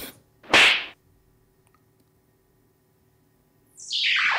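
Video-editing sound effects: a short whip-like swish about half a second in, then near the end a transition swoosh that falls steadily in pitch.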